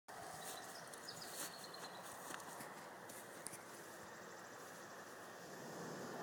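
Homemade black powder fountain burning with a steady hiss and faint crackles, growing slightly louder as it builds.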